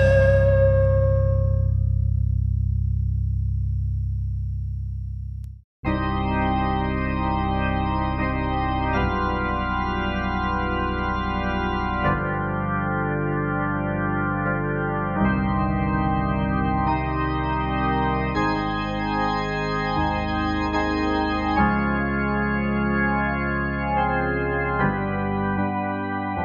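Music: a chord rings on and fades over the first five seconds, then cuts off briefly. Sustained organ chords follow, each held for about three seconds before moving to the next.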